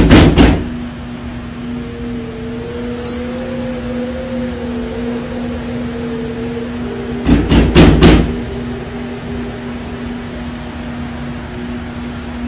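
A quick run of loud knocks on a restroom stall door right at the start, then another run about seven seconds in, over a steady low hum.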